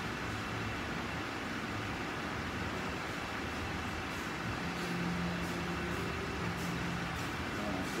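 Steady rushing noise of lit gas stove burners in a kitchen, with a few faint clicks in the second half.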